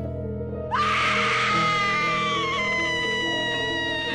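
A woman's long, high-pitched scream, starting about a second in and slowly falling in pitch. Steady background music plays under it.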